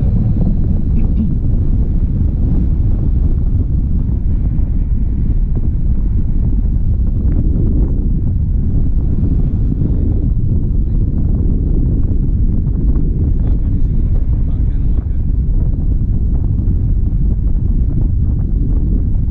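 Wind buffeting an action camera's microphone in paragliding flight: a loud, steady low rumble of airflow.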